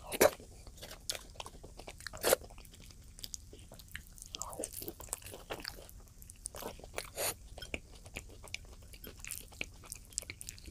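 A person eating close to the microphone: two loud crunchy bites, one just after the start and one about two seconds in, then steady wet chewing and mouth clicks.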